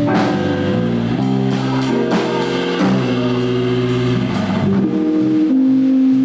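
Live jazz quartet playing an instrumental piece: two electric guitars, electric bass and drum kit, with held guitar and bass notes over cymbals.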